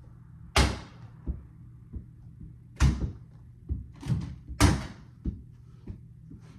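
Small rubber balls thrown at a toy basketball hoop, striking it and the door behind it with three loud knocks about two seconds apart, with softer knocks between as the balls drop and bounce on the carpeted floor.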